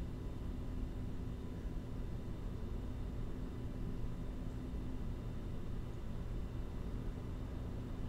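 Steady low-pitched background noise with a faint constant hum and no distinct events: room tone.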